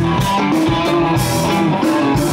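Live rock band playing: electric guitars playing a riff over drums and bass guitar, with steady cymbal strokes.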